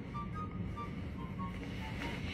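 Quiet pause filled by faint background music, a scatter of short high notes over a low steady rumble.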